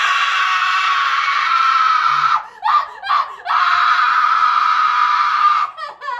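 A woman screaming, acted for a horror scene: one long high scream, two short cries about two and a half seconds in, then a second long scream that stops just before the end.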